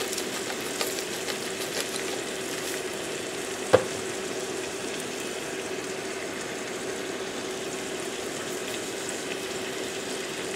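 Mixed greens sizzling in a nonstick frying pan: a steady crackling hiss with small pops, over a faint steady hum. A single sharp click about four seconds in is the loudest sound.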